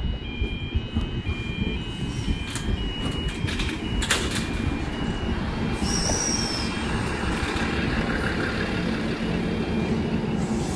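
An Endeavour diesel railcar pulls into the platform and slows, with a steady low engine and wheel rumble. An alternating high two-tone electronic warning signal sounds through the first half and stops about halfway, a few sharp clicks come around four seconds in, and a brief high brake squeal follows about six seconds in.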